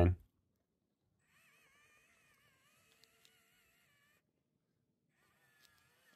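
Very faint, almost silent: the small electric motor and gears of a 1/24-scale RC crawler whine with a wavering pitch as the throttle is worked. The whine runs for about three seconds, stops, and comes back briefly near the end.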